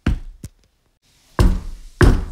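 Knocking on a door: three sharp knocks, the second close after the first and the third about a second later.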